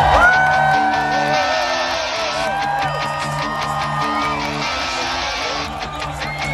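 Background music: guitar with held, gliding notes over a repeating bass line.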